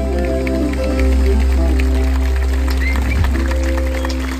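A live band playing amplified through stage speakers, with a steady deep bass and held chords.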